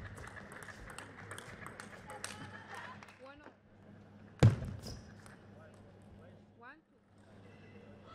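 Table tennis rally: the ball clicking quickly off the bats and the table, sneakers squeaking briefly on the court floor twice, and one loud sharp thump a little past halfway.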